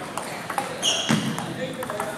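Table tennis ball knocking sharply off paddles and the table during a rally, several quick clicks echoing in a large hall, with a short high ping about a second in. Background chatter from the hall runs underneath.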